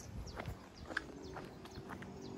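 Footsteps on a concrete lane: a few light, irregular steps, with a faint steady hum underneath.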